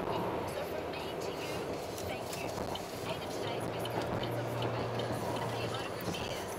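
Steady road noise inside a moving car's cabin at motorway speed, with indistinct voices under it and a low hum that comes in about halfway through.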